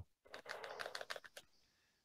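Faint computer keyboard typing: a quick run of light clicks lasting about a second.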